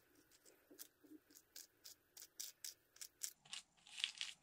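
Faint, quick scratching strokes of a small flat brush working paste-wetted tissue paper onto a balsa model float, about three or four a second and louder in the second half.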